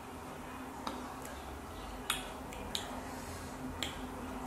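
Mouth sounds of eating: about five short, sharp lip smacks and licks, including fingers being licked clean of chili seasoning, over a faint steady low hum.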